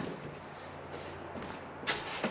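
Quiet movement and shuffling around a weight bench, then one sharp knock a little before the end.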